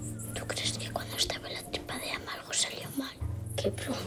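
A child whispering a question, over a low, steady music drone that drops out for about two seconds in the middle.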